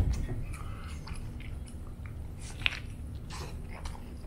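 Close-miked chewing of a mouthful of burrito, with scattered small wet mouth clicks and one sharper click about two-thirds of the way through.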